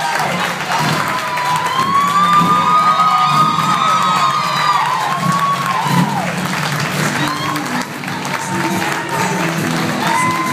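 Music playing while a crowd cheers and applauds, with drawn-out whoops in the first half.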